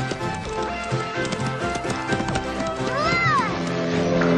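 Cartoon horse galloping away: clip-clop hoofbeat effects over orchestral background music, with a short whinny that rises and falls in pitch about three seconds in.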